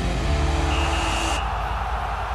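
Sound design of a TV programme's animated logo ident: a whoosh over a steady low drone, with a short high tone just under a second in, and the hiss cutting off suddenly soon after.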